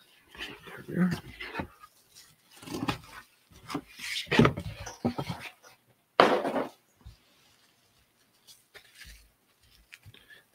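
A cardboard book mailer being ripped open along its tear strip, then a bubble-wrapped comic handled: irregular tearing and rustling of cardboard and plastic bubble wrap, with the loudest, most sudden rustle about six seconds in.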